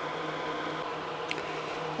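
Quiet, steady background hum with an even hiss, and one faint click about a second in.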